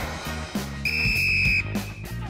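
A buzzer sounds once about a second in: a single steady high tone lasting under a second, marking the end of a timed three-point shooting round. Background music plays underneath.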